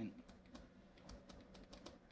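Faint, irregular clicks and taps of a stylus writing on a pen tablet.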